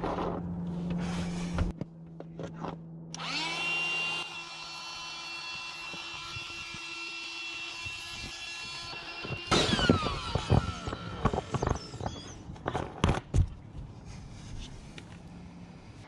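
Ryobi cordless inflator blowing air into a vinyl ballast bag. Its motor spins up with a rising whine about three seconds in, runs steadily for about six seconds, then winds down with falling pitch. Clicks and rustling of the bag and nozzle follow.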